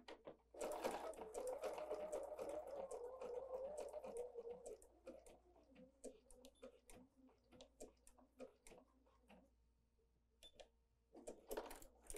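BERNINA 770 QE sewing machine running a blanket stitch through wool appliqué, a steady motor sound with rapid needle clicks. After about five seconds it gives way to scattered single clicks, which die out about ten seconds in.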